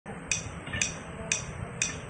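Metronome clicking at an even two beats a second (about 120 bpm), four clicks, over a low steady hum.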